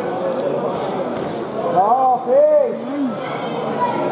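Speech only: people chattering and shouting in a large, echoing sports hall, with a few loud shouted calls about two seconds in.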